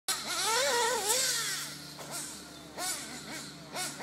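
Nitro RC car engine revving, its high-pitched note wavering up and down under sustained throttle for the first second and a half, then a series of short throttle blips that each sweep up in pitch.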